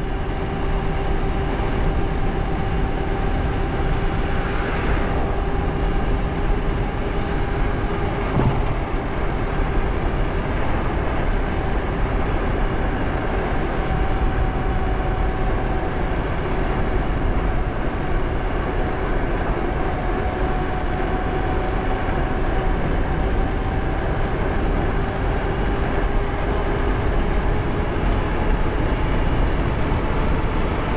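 Electric bike ridden flat out at about 30 to 34 mph: a steady motor whine over heavy wind rush on the microphone and tyre noise from the road.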